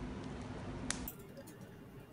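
Low background room noise with a faint steady hum and one sharp click just before a second in. The room noise then drops to a quieter hiss.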